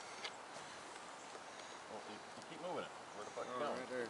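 Quiet outdoor background with a faint tap just after the start, then a faint, unclear voice murmuring over the last second and a half.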